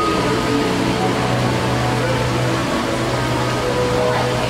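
Steady rushing water noise of a shallow aquarium touch pool, with music and faint voices under it.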